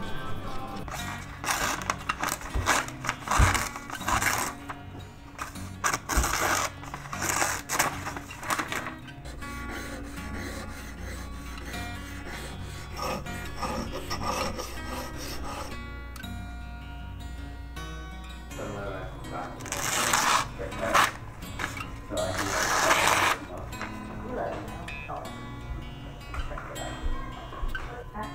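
Background music, with rasping strokes of a pocketknife being scrubbed with a toothbrush and its blade drawn across sharpening stones; the loudest runs of strokes come at about two to nine seconds in and again around twenty to twenty-three seconds in.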